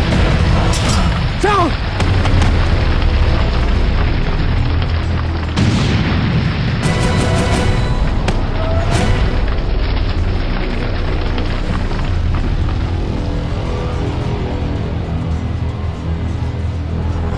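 Dramatic background score under battle sound effects: booming explosions over a heavy continuous rumble, with several sharp blasts about a second and a half in and again between six and nine seconds in.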